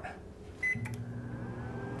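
Panasonic HomeChef 7-in-1 oven gives one short high beep as start is pressed. A moment later it begins running with a steady low hum as its slow-cook program starts.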